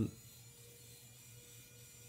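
Quiet room tone with a faint steady electrical hum and a thin steady whine.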